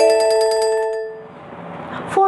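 Short transition jingle of bright chime-like mallet notes, a quick rising run that rings on and fades out about a second in.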